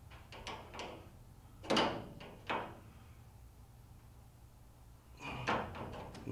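Small wrench tightening a brass compression nut onto a saddle tapping valve on a copper water pipe: light metal clicks of the wrench on the fitting, two louder sharp knocks about two and two and a half seconds in, then more clicks near the end.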